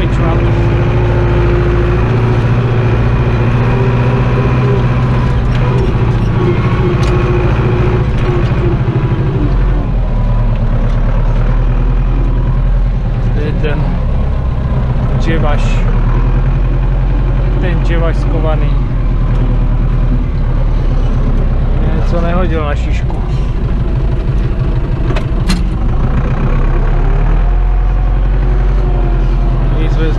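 Zetor 7245 tractor's diesel engine running steadily as the tractor drives, heard from inside the cab, with its pitch shifting about a third of the way through. Cab fittings rattle and knock now and then.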